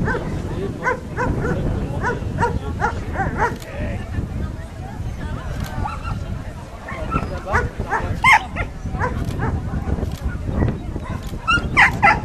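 A dog barking in quick runs of short barks, about three a second, with pauses between the runs, as the agility dog races round the course.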